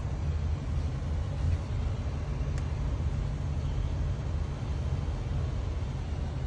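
Steady low rumble in the cabin of a 2021 GMC Yukon XL, with a single faint click about two and a half seconds in.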